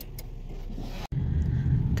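Car engine and road noise heard from inside the cabin, a steady low rumble that cuts out for an instant about a second in and comes back louder.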